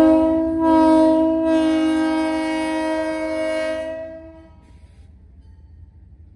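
Diesel locomotive's multi-note air horn sounding one long steady blast that cuts off about four seconds in, leaving a faint low rumble as the locomotive moves away.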